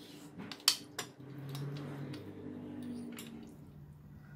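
Chopsticks clinking against a small glass bowl, a sharp clink just under a second in and another about a second in, then stirring through raw chicken slices wet with soy sauce for about two seconds.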